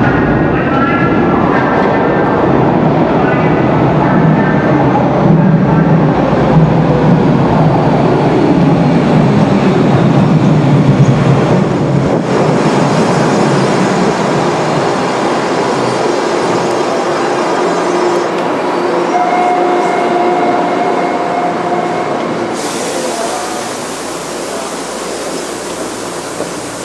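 A Hawker Siddeley H5 subway train pulling into an underground station: a loud rush of wheels and motors as the cars run in along the platform, easing off as the train slows and stops. A steady tone sounds for about three seconds later on.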